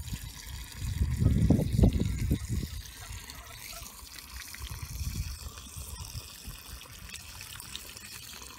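Garden hose running tap water into a plastic tub of crushed acorns: a steady trickle as the tub fills to submerge the acorns for soaking out their tannins. A low rumble sits under it for the first couple of seconds.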